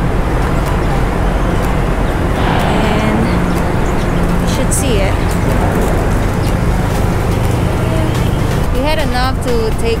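Steady traffic noise of a busy city street, with voices of people nearby.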